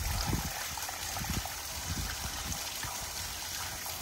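Water from a garden hose spraying into a plastic plant pot: a steady rush of running, splashing water.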